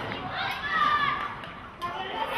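Children's voices shouting and calling out to each other, loudest about half a second in.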